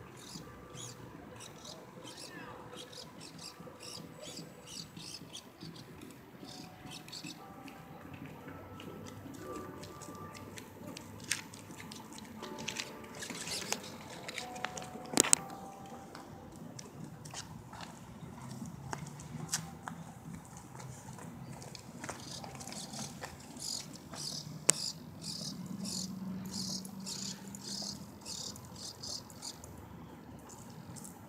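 Small birds chirping repeatedly, with a couple of sharp clicks about 11 and 15 seconds in.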